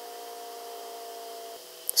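A faint steady hum made of a few held tones over low hiss; the tones stop about one and a half seconds in. A short click comes just before the end.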